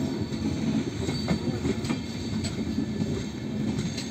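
LHB passenger coaches rolling past on the track: a steady rumble of wheels on rail, with a few faint clicks.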